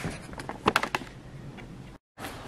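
A quick run of light clicks and taps, about half a second to a second in, over quiet room tone.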